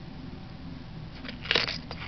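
A long flat clay-cutting blade pressed down through a thin sheet of polymer clay onto paper: a brief crackling scrape about one and a half seconds in.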